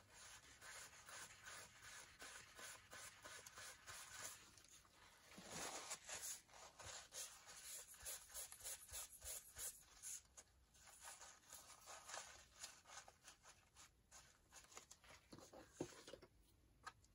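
Faint rustling and rubbing of a paper tissue wiped over a paper label and card in many short strokes, wiping off stray glue; the strokes are a little louder in the middle.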